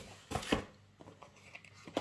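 Two brief taps and rustles of a plastic-wrapped package being handled, about half a second in.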